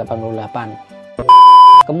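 A loud electronic beep: one steady, high tone held for about half a second, starting a little past the middle and cutting off suddenly.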